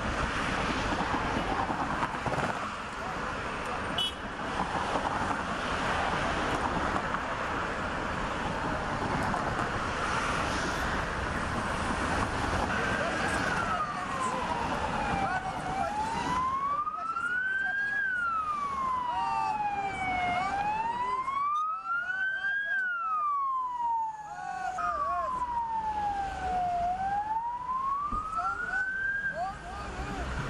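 A steady rush of street noise, then about halfway through an emergency vehicle siren starts wailing, sliding slowly up and down in pitch, each rise and fall taking a few seconds.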